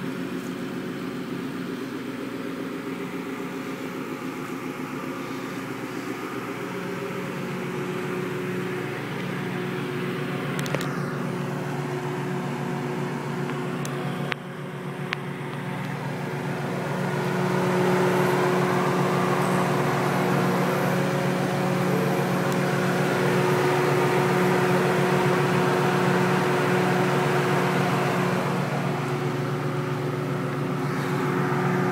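A 2003 Mustang Cobra clone's engine idling steadily, growing louder a little past halfway. A few sharp clicks fall around the middle.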